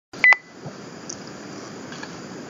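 A short, high electronic double beep about a quarter second in, then low steady room tone.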